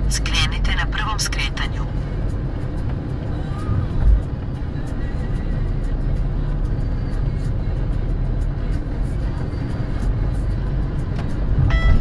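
Steady low rumble of a car's engine and tyres heard from inside the cabin while driving, with a brief bump about four seconds in.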